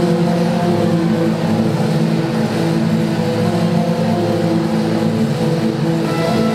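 Music for a Bollywood-themed group roller-skating routine playing over a hall's sound system: sustained, droning chords with no clear beat.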